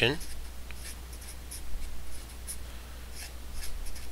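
Felt-tip marker writing a word in a string of short, faint scratching strokes.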